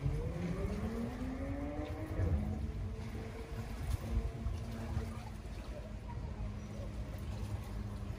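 Motorboat engine rising in pitch as it speeds up over the first couple of seconds, then running at a steady pitch, over a low rumble.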